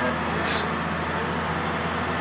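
International DT466 inline-six turbo diesel of a 2006 IC CE school bus running steadily under way, heard from inside the cab, with a brief hiss about half a second in.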